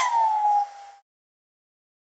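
An 1875-watt hair dryer being switched off: its whirring and motor whine fall in pitch and die away within about a second, followed by silence.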